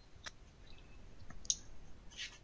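A few faint, scattered clicks, the sharpest about one and a half seconds in.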